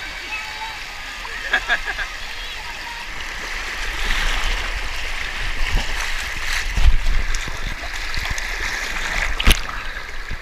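Water of a shallow rocky river rushing and splashing right at the microphone as it floats through a riffle, growing louder about four seconds in. A few sharp splashes or knocks come near the end, the strongest just before it ends.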